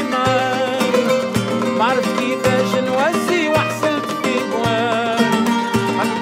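Arab-Andalusian and flamenco fusion ensemble playing. Bowed violins draw sliding, wavering melody lines over plucked oud, kanun and flamenco guitar, with a deep darbuka stroke about once a second.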